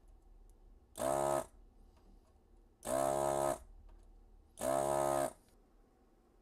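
Vacuum desoldering tool's suction pump buzzing in three short bursts, each about half a second long and about two seconds apart, with a hiss of air as it sucks molten solder out of the IC's pin holes.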